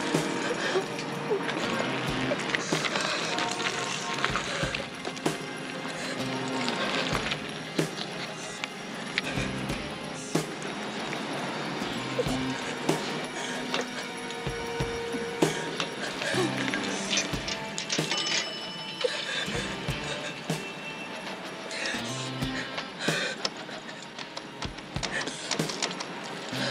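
Background drama score music, with scattered sharp knocks and clicks over it.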